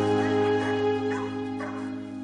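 A slow ballad's held chord fading down, with dogs giving several short yips and barks over it.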